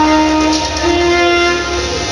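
Saxophone playing two long held notes over a recorded backing track, the first ending about half a second in and the second held through most of the rest.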